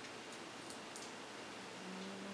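A few faint, crisp crunches and ticks from a toddler chewing popcorn, over a steady low hiss.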